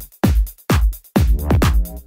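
Loud electronic dance music played by a DJ, with a fast, steady kick-drum beat and a deep bass line.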